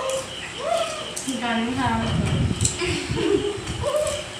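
Voices of several young people, with short rising exclamations and some low rustling noise, during a pani puri eating challenge.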